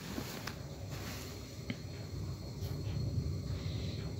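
Soft, uneven handling noise of fingers tying wool yarn and nylon fishing line around a fishing hook, with a few faint small ticks.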